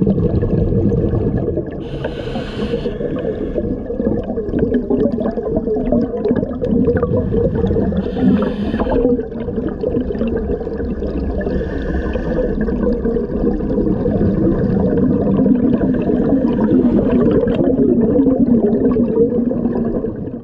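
Scuba diver's breathing heard underwater: a steady, low bubbling rumble of exhaled air escaping from a regulator, broken by three hissing inhalations through the regulator.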